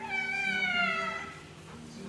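A cat meowing once: a single long meow that falls slowly in pitch and fades after about a second and a half.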